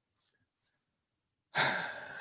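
Near silence, then about one and a half seconds in, a man's audible breath, a short breathy hiss that fades away.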